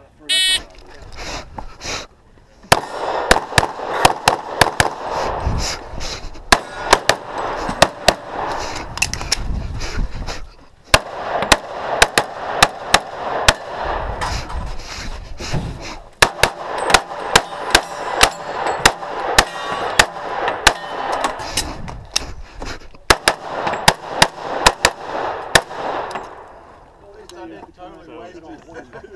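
A competition handgun firing a long course of fire: dozens of sharp shots, often in quick pairs, broken by several short pauses. A short electronic beep from the shot timer starts the run just before the first shots.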